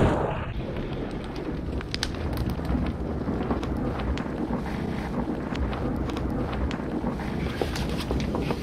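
Steady low rumble of storm wind, with scattered small clicks and crackles through it. It opens on the fading tail of a loud bang.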